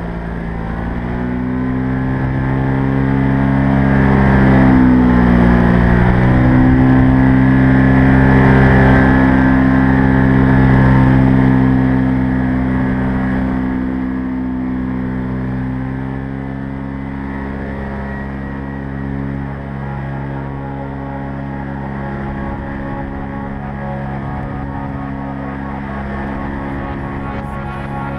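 Paramotor engine and propeller running in flight. The engine note dips in pitch twice in the first six seconds, swells louder through the middle, then holds a steadier, slightly quieter drone.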